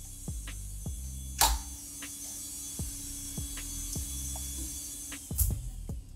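Background music with a steady low bass and a regular beat, with a short loud crash of noise about one and a half seconds in and another near the end.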